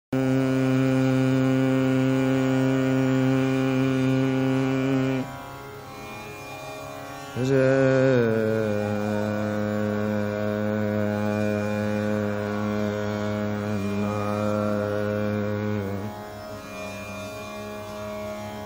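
Male Hindustani classical vocalist holding long, steady notes over a tanpura drone, sliding down into a new note about seven and a half seconds in. The drone carries on more quietly on its own in the gaps between notes.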